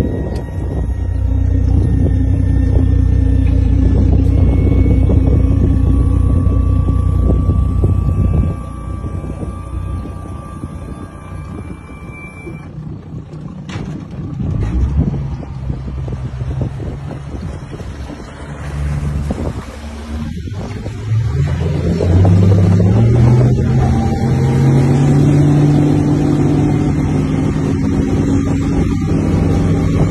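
Mercury 350 Verado outboard, a supercharged inline-six, running with the boat underway at speed. About two-thirds of the way in its pitch rises as it is throttled up, then holds steady.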